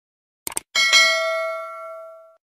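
Two quick clicks like a mouse click, then a bright bell ding that is struck twice in quick succession and rings out, fading slowly. It is the notification-bell sound effect used when a subscribe bell is clicked.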